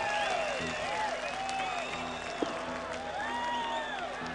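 Large concert crowd applauding and cheering between songs, with scattered shouts and whistles rising and falling over the noise, and a faint low hum from the stage underneath.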